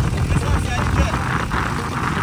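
A sport motorcycle's engine running at low speed as it rolls along, heard as a steady low rumble mixed with road and wind noise.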